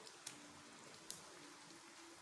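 Faint, even sizzling of a bhatura deep-frying in hot oil, with two sharp clicks, the louder about a second in.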